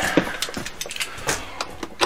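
A person moving about: about half a dozen light knocks and clicks, spread unevenly over two seconds, over a faint rustle.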